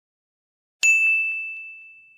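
A single bright ding sound effect struck about a second in: one clear high tone that rings and fades away over about a second.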